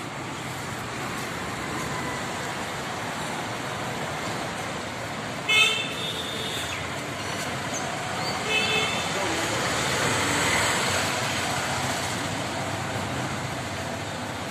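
Steady road-traffic noise with two short vehicle horn toots, the first and louder about five and a half seconds in, the second about three seconds later.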